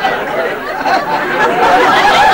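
Studio audience laughing together after a punchline, many voices overlapping at a steady level.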